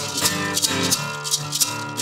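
Two acoustic guitars strumming a blues accompaniment while a hand shaker keeps time at about four shakes a second, with no singing.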